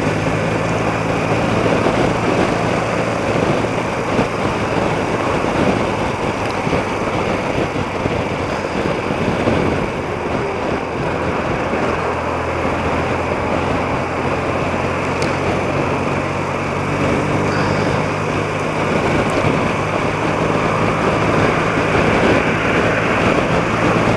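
A 30-year-old BMW motorcycle's engine running steadily at cruising speed, with the rush of wind and road noise over it.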